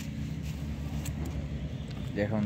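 Steady low background rumble with a few faint, light clicks of small metal parts being handled.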